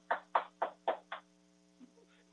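Gavel rapped about six times in quick succession, roughly four blows a second, the last one softer, marking the meeting's adjournment. A faint steady electrical hum lies underneath.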